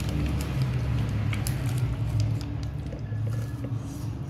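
Crispy fried chicken wing breading crackling in many short, sharp clicks as the wing is torn apart by hand and chewed, over a steady low hum.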